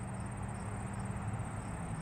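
Quiet outdoor background: a steady, high-pitched insect chirring that pulses evenly, over a low steady hum.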